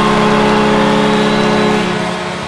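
Hockey arena horn sounding one long steady chord that cuts off near the end.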